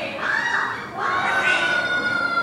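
Children shouting in a crowd. About a second in, a long steady high tone starts and slowly falls a little in pitch.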